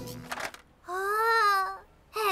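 A brief musical sting ends, then an animated child character's voice holds one long wordless vocal note for about a second, its pitch rising slightly and falling again.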